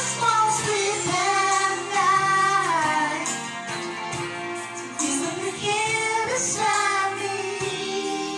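A woman singing a pop ballad into a karaoke microphone over a backing track, holding long notes that waver and bend in pitch.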